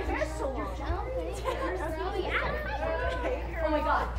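A group of people chatting and talking over one another in a large room, several voices at once.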